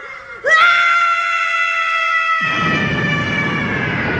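An anime character's long powering-up scream, held at one high pitch, starting about half a second in. Halfway through, a low rumble from an energy blast swells beneath it.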